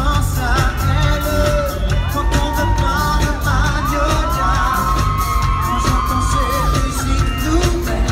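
Live pop music played loud through a concert PA, heard from the audience: a heavy, steady bass beat with a singer's voice carrying the melody over it.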